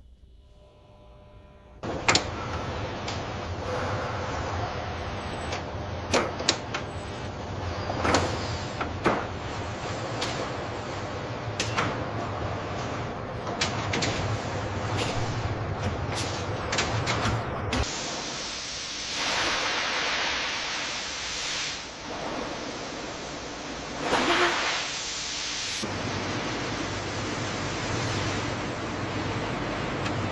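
Automated factory machinery running: a steady low hum under repeated clicks and clunks. A little after halfway a louder hissing rush comes in for about eight seconds, with a short surge in the middle of it.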